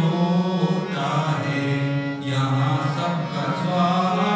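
A man singing a slow devotional song into a microphone with long held notes, accompanied by a harmonium.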